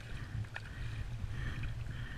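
Water splashing and sloshing beside a kayak as a hooked fish thrashes at the surface, over a steady low rumble. There is a short sharp click about half a second in.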